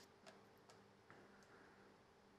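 Faint clicks of mahjong tiles being discarded onto the table, four light taps about half a second apart, over near silence.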